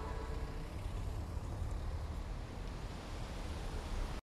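The tail of a pop song dying away: a faint held note fades out, leaving a quiet, steady low rumble from the music video's closing soundtrack.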